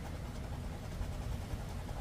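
A coin scraping the coating off a scratch-off lottery ticket, faint under a steady low rumble of wind on the microphone.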